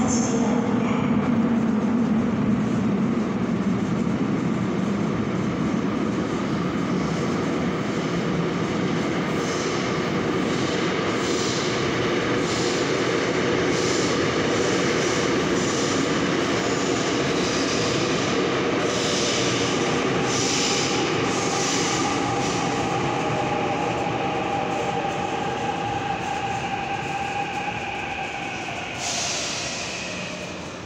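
Seoul Subway Line 6 train running into the station and braking to a stop, a continuous rumble of wheels on track with a steady whine over the last several seconds. A short burst of hiss comes near the end as the train comes to rest and the sound dies down.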